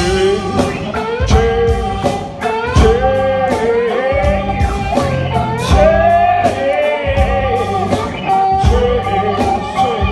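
Live blues-rock band playing: electric guitar over a steady drum beat, with a singer's voice carrying the melody.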